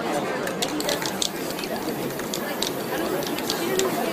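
Aerosol spray-paint can hissing in a series of short bursts, with voices murmuring in the background.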